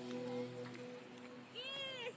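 Held music notes fade out, then a single short meow-like animal call, rising then falling in pitch, comes about a second and a half in.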